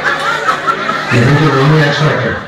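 People chuckling and laughing over chatter. About a second in, a man's low voice comes in and holds a steady pitch.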